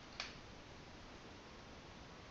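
Near silence: faint room hiss with a single sharp computer mouse click just after the start.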